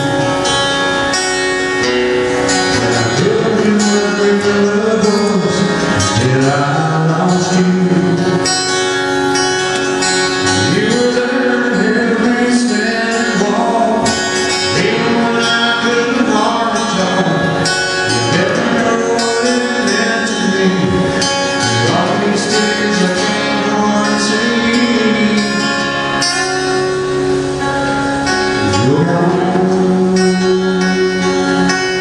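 A man singing a country love song live, accompanying himself on an acoustic guitar.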